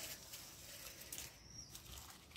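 Faint rustles and a few soft clicks of gloved hands handling a plastic plant pot and potting soil.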